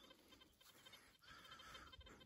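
Near silence: faint outdoor room tone, with a faint brief sound in the second half.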